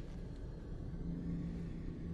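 Low, dark rumbling drone of a film's score and sound design, with a held low tone that swells about a second in.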